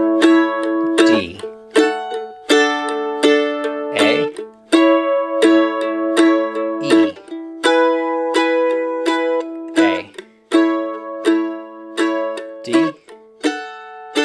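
Mandolin strumming closed-position chords in a I–IV–V progression in the key of A, with steady repeated strums and a chord change every couple of seconds.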